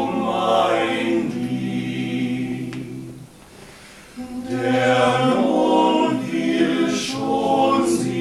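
Male vocal quartet singing a cappella in close harmony, holding sustained chords. The singing breaks off for about a second a little before halfway, then comes back in.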